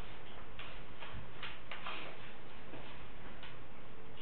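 A pen scratching on paper in short, irregular strokes as answers are written on a worksheet, over a steady hiss of room noise.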